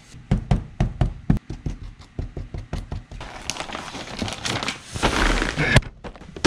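A quick run of knocks and taps against the table, then a large sheet of printed paper being handled, rustling and crinkling for the last few seconds.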